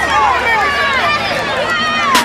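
A crowd of many overlapping voices shouting and cheering at once, with no single speaker standing out.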